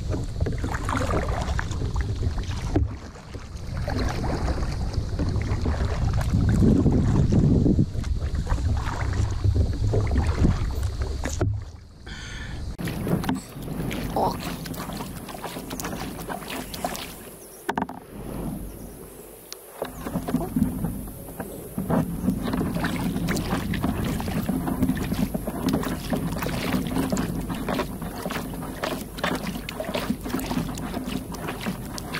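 Kayak paddling on a lake: paddle strokes dipping and dripping and small splashes of water against the hull. Wind buffets the microphone with a low rumble for the first ten seconds or so, and the sound changes abruptly a couple of times where the footage is cut.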